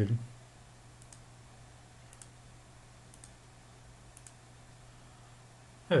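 Faint computer mouse clicks, about one a second, four in all, as the paint bucket tool fills areas of an image in Photoshop. A low steady hum runs underneath.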